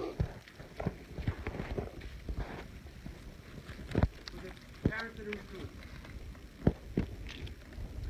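Irregular sharp knocks and taps, the loudest about four seconds in and again near seven seconds, with distant voices calling briefly around the middle.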